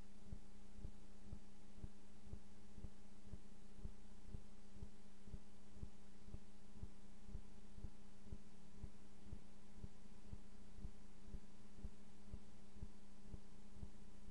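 A steady low hum with soft, regular low thumps repeating about twice a second.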